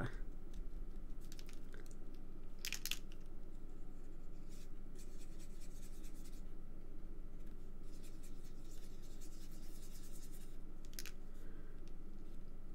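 Faint scratching of a glitter brush pen stroked over cardstock, with a few light clicks, over a steady low room hum.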